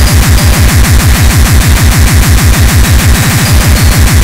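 A speedcore track at 390 BPM. It is a rapid, even stream of distorted kick drums, each dropping in pitch, about six or seven a second, under a loud wall of harsh noise.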